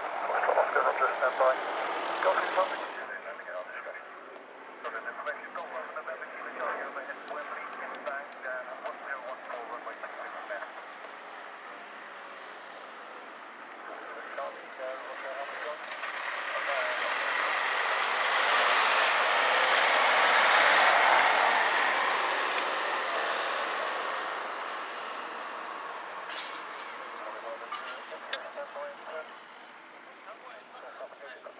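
A single-engine light aircraft's piston engine swells to a peak about two-thirds of the way through, then fades as the plane moves past along the runway. Voices talk over the first ten seconds or so.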